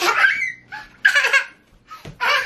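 A young child laughing gleefully in two bursts, about a second apart.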